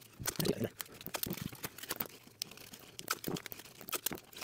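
Cardboard pieces and blue painter's tape being handled, stacked and pressed down onto a tiled floor: an irregular run of short crinkles, clicks and rustles.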